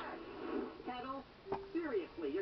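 A person talking indistinctly, with a single sharp click about one and a half seconds in.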